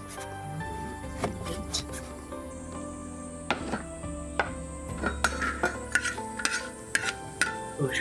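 Kitchen cooking sounds: a knife and utensils giving irregular sharp clicks on a board and pan, over soft instrumental music.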